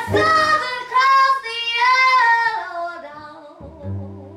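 A woman singing high, held notes over an acoustic string band of upright bass, banjo and guitar; the voice slides between long notes and fades out about three seconds in, leaving plucked upright bass notes near the end.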